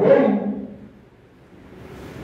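A man's voice amplified through a microphone, a spoken phrase trailing off in the first half second, followed by a short pause with faint room noise.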